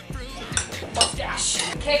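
Cutlery and dishes clinking and clattering, starting about half a second in, over background music with a steady beat.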